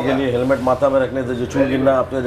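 Handheld electric facial massage device buzzing with a steady pitched hum, the tone breaking and wavering every fraction of a second as it is worked over the cheek.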